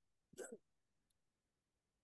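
Near silence, broken about a third of a second in by one short, quiet breath sound from a person.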